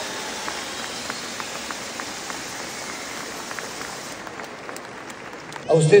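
Audience applauding, a dense even clatter of many hands that thins out about four seconds in and dies down near the end.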